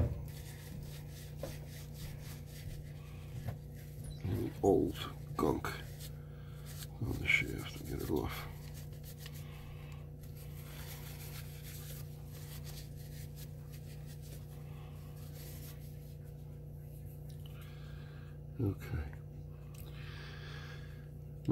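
Faint rubbing and handling as a tissue wipes the commutator and shaft of a Lionel whistle motor, over a steady low electrical hum. A few brief vocal sounds come in the first half and once near the end.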